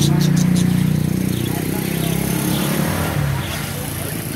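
A motor vehicle's engine running nearby, loudest at first and fading away after about three seconds, with a few brief budgerigar chirps right at the start.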